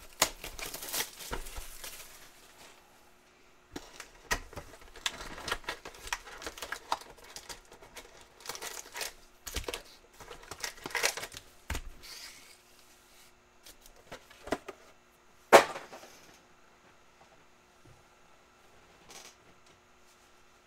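Plastic shrink-wrap crinkling and tearing as a sealed trading-card box is unwrapped, then cardboard and foil packs being handled, in irregular crackles and clicks. There is one sharp snap about three-quarters of the way through, and after it only a few faint taps.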